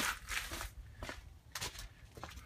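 Footsteps on rough outdoor ground, several uneven crunching steps.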